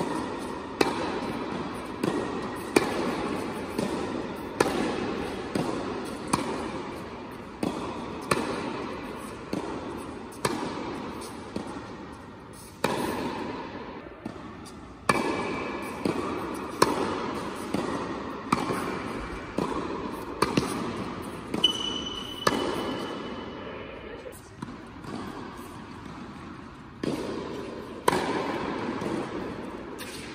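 Tennis rackets striking the ball in a fast volley exchange, with sharp hits about once a second. Each hit rings on in the echo of a large indoor tennis hall.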